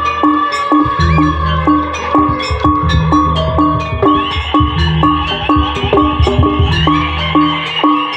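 Jaranan gamelan ensemble playing a fast, steady rhythm: tuned metal gong-chimes struck in quick even strokes over drums.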